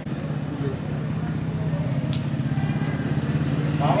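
A motor vehicle engine running steadily with a low, fast, even pulse, growing slightly louder.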